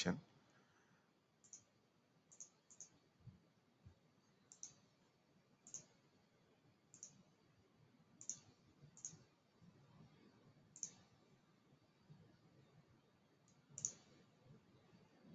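Faint computer mouse clicks, about a dozen at irregular intervals, over near silence.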